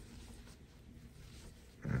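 Faint room tone with the soft handling of thick yarn on a crochet hook while a stitch is worked, then a single spoken word near the end.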